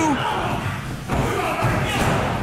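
Bodies thudding on a wrestling ring mat during grappling, in a hall with some echo. A shouted voice trails off at the start, and a sharper thud lands near the end.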